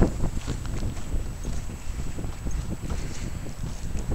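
Footsteps on the rocky, frozen lakeshore, a run of irregular short steps, with wind rumbling on the microphone throughout.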